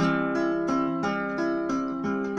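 Acoustic guitar playing the opening of a bolero, chords plucked in an even rhythm of about three strokes a second.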